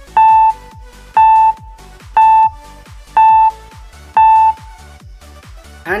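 Five short electronic beeps, one a second: a quiz countdown running before the answer is shown. Background music with a steady beat plays under them.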